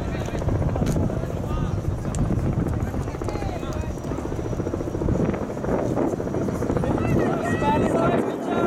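A low, rapidly pulsing engine drone, with players' shouts from the field over it.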